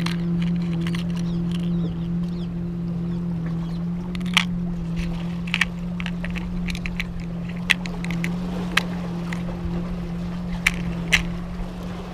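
Steady drone of a boat engine running, its pitch shifting slightly now and then. A few sharp clicks, from about four seconds in, as a metal jig and its hooks knock against a plastic tackle box.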